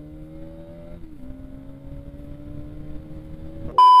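Bajaj Pulsar NS200 single-cylinder engine pulling under acceleration on the move: its pitch climbs, drops once about a second in, then climbs again. Near the end, a loud, steady electronic test-card bleep cuts in over it.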